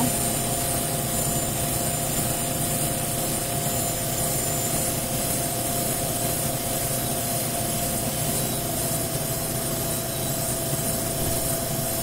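Induction heater running steadily: an even rushing drone with two steady tones in it, while it holds a steel bar at cherry red and the silver solder on a carbide tooth melts.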